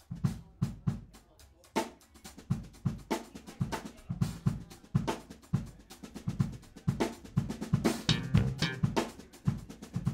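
Drum kit played freely: a quick, uneven run of snare, bass drum and cymbal strikes that starts abruptly and grows busier toward the end.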